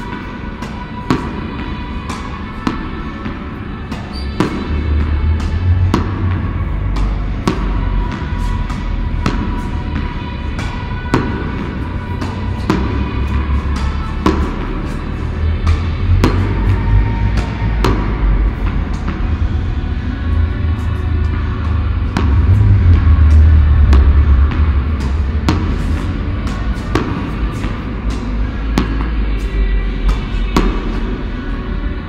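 Background music with steady sustained tones and a heavy bass line that comes in about four seconds in and swells again later. Sharp knocks sound over it at irregular intervals, roughly once a second.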